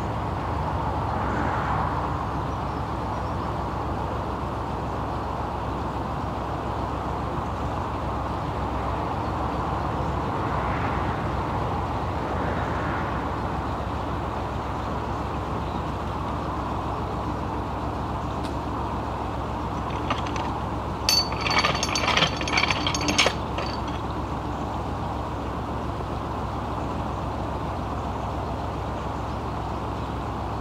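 Canal lock paddle gear's ratchet and pawl clicking rapidly for about two seconds, a little past two-thirds through, as a windlass winds the paddle up. Under it runs a steady low hum with traffic passing on a nearby road.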